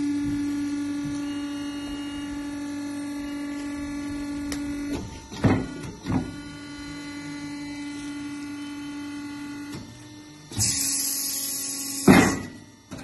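Ravaglioli tractor tyre changer's electric drive running with a steady pitched hum. The hum breaks off about five seconds in with two brief louder surges, then runs on. A loud hiss starts about ten and a half seconds in.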